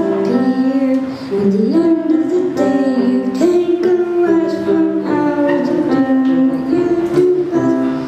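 Electronic keyboard playing an instrumental passage of held chords, changing about once a second.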